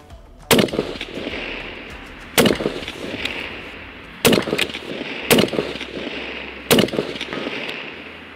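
Bolt-action precision rifle fired five times, the shots one to two seconds apart, each trailing off in a long rolling echo.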